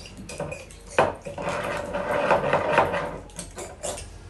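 A mixing tool clattering and clinking rapidly against a glass test tube as a liquid mixture is whisked vigorously, with a sharp knock about a second in.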